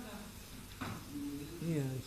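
Quiet, indistinct speech in a room.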